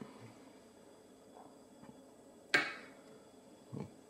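Lock picking in a challenge lock's keyway with a hook pick under tension: mostly faint, with one sharp metallic click a little past halfway.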